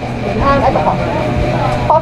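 Indistinct talking, with a steady low hum underneath.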